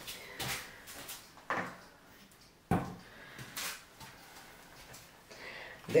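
Small plastic paint cups and their lids handled and set down on a work table: four short, light knocks and clicks about a second apart, the sharpest near the middle.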